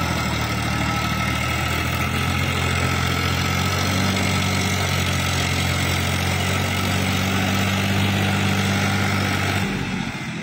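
Farmtrac 6042 tractor's diesel engine running steadily under load while its rotavator churns through flooded mud. The low engine note drops away just before the end.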